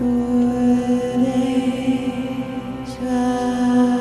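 Meditative drone music: a long held low tone with rich overtones, shifting slightly about a second in and again near three seconds, with a brief high shimmer just before the second change.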